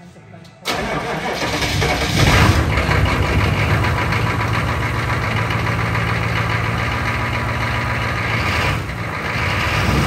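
Chevrolet pickup truck engine starting up: it fires about a second in, picks up speed as it catches, then settles into a steady idle, rising again near the end.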